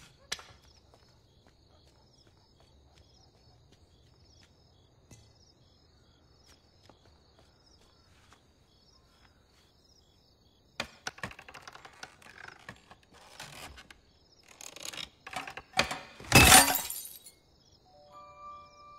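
A short knock, then a long quiet stretch with a faint, evenly repeating high chirp. From about eleven seconds in come rustling and knocking sounds that build to a loud crash near the end, like something breaking.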